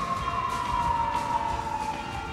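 A single siren wail gliding slowly downward in pitch, over soundtrack music with a steady beat.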